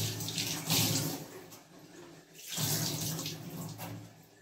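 Tap water running into a stainless-steel kitchen sink as hands are rinsed under the stream. It comes in two spells: one over about the first second, and another from about two and a half seconds until near the end.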